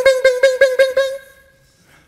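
A man's voice glides up into a held high note that pulses about eight times a second. The note fades out just over a second in.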